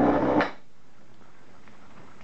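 Small plastic breaker parts rattle in a glass bowl for about half a second as the bowl is picked up, then only faint room tone.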